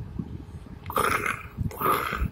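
A person imitating a playful kitten with the voice for a plush toy kitten: two short growly animal-like calls, one about a second in and one near the end.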